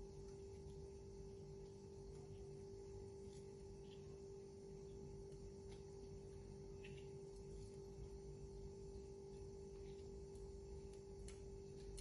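Near silence: a faint steady hum in the room, with a few faint soft ticks.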